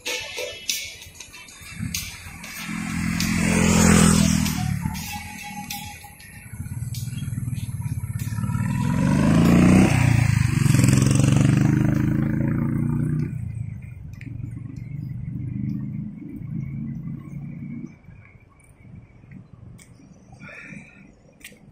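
Motor vehicles passing close by on a city road: one swells and fades about four seconds in, and a louder, longer one peaks around ten seconds in, each with engine rumble and tyre hiss. A weaker engine sound follows until near the end. Music plays underneath.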